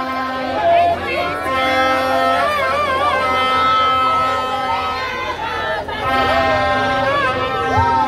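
A man's amplified voice sings with vibrato over music made of long held steady notes, with crowd noise underneath.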